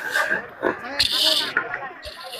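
Harsh shouted voices over crowd noise at an outdoor training drill, with a held high note near the start.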